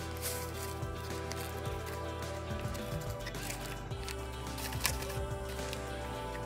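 Background music with sustained notes, plus a couple of faint light clicks.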